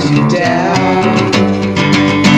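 Music from a self-recorded demo song: strummed guitar chords over a bass line, steady and loud.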